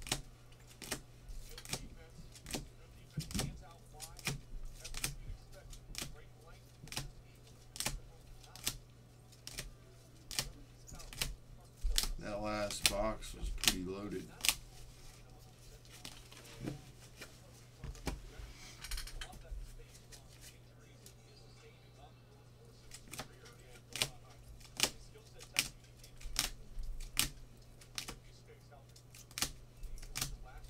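Rigid plastic toploader card holders clicking and clacking against each other as a stack of cards is handled and sorted, sharp irregular clicks about one or two a second, over a faint low hum.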